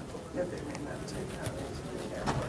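Low murmur of people talking quietly in a crowded hallway, over steady room noise.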